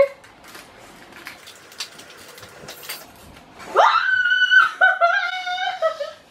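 Faint small clicks and rustles, then, about four seconds in, a loud, very high-pitched squeal from a person that slides up and holds with a slight waver for about two seconds.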